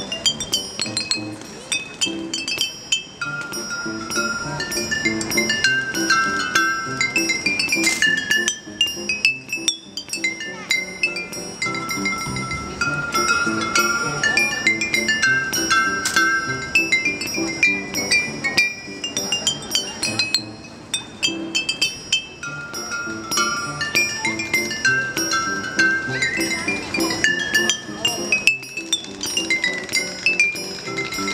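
Glass bottle xylophone, hanging glass bottles of different tunings struck one after another. They play a melody of bright ringing notes whose phrase comes round again about every ten seconds, over lower notes beneath.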